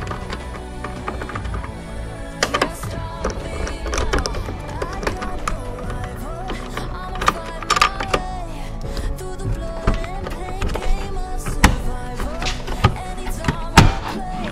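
Background music, with a few sharp clicks and knocks from a 10 mm socket being turned by hand on a trim bolt and from plastic interior trim being handled.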